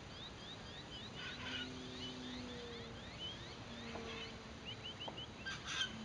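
Birds calling outdoors: a run of short, rising chirps about three a second, with a louder call about a second in and another near the end. Under them, a faint low drone shifts up and down in pitch, the distant electric model plane's motor changing throttle.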